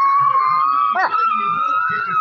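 A long, high-pitched howl held for about three seconds, rising slightly in pitch, with a brief wavering break about a second in.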